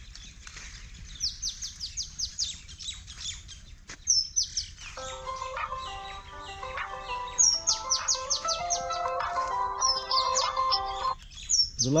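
Birds calling over and over in quick, high, falling chirps. From about five seconds in until shortly before the end, a melody of held notes plays alongside them.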